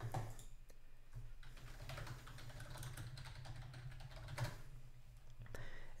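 Typing on a computer keyboard, a run of faint keystrokes entering a terminal command, with one harder keystroke about four and a half seconds in, over a low steady hum.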